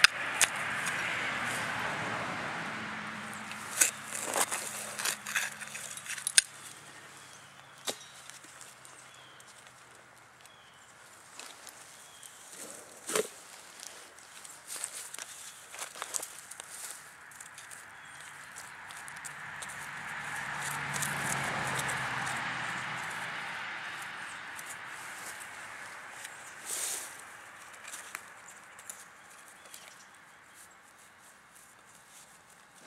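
Hand digging in dirt and pine straw: scattered scrapes and clicks of a digging tool working soil and roots in a hole. Twice a broad rumble swells up and fades away, at the start and again about twenty seconds in.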